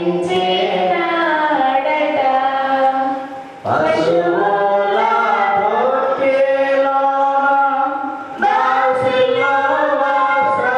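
Slow Christian devotional song sung into a microphone, in long held notes. The phrases break off briefly about three and a half seconds in and again about eight and a half seconds in before the singing resumes.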